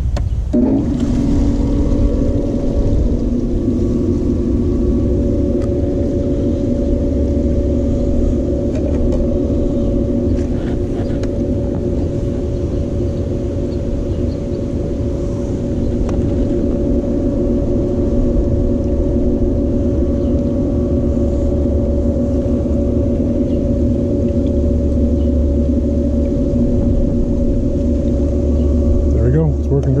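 Intex sand filter pump motor starting about a second in, then running with a steady electric hum of several even tones, circulating the pool water, with an uneven low rumble underneath.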